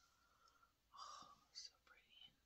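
Near silence, with a few faint breathy whispering sounds from a person, about a second in and again shortly after.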